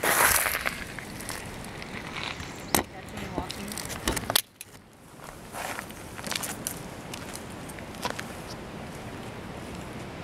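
Camcorder handling noise as it is carried and set down on the rough surface of a bridge, with a rustle at the start and sharp knocks about three and four seconds in. After it settles it is quieter, with light footsteps on gritty asphalt.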